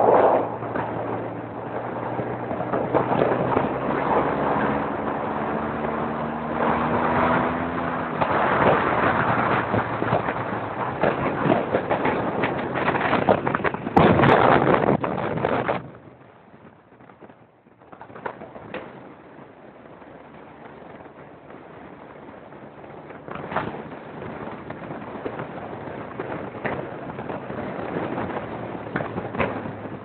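Motorcycle engine and wind rushing past the microphone while riding, the engine note rising in pitch over the first several seconds. About halfway through the sound drops suddenly to a much quieter rushing.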